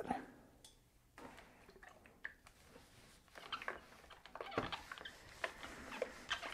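Faint rustling of a cotton T-shirt sleeve being handled and folded, with a few light knocks.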